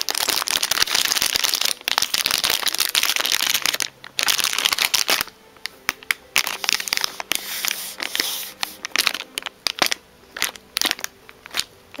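Clear plastic bag of chess pieces crinkling as it is handled, dense for the first five seconds or so, then thinning to scattered crackles and clicks.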